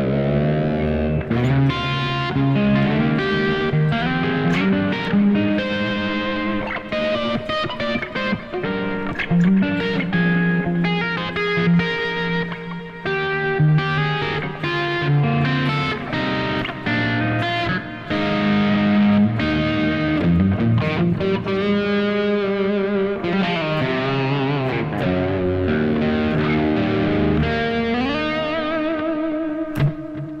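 Mexican Fender Stratocaster electric guitar played solo with an overdriven lead tone, running through melodic lines. Near the end it settles on a held note with vibrato that then fades away.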